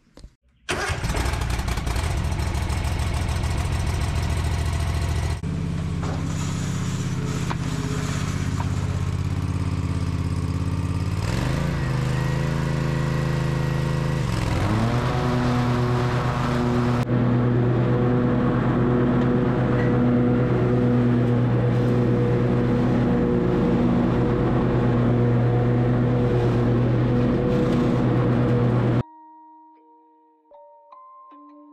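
Toro TimeCutter 75750 zero-turn riding mower's engine running. Its pitch dips and climbs again in the middle as the throttle changes, then holds steady, and the sound cuts off suddenly near the end.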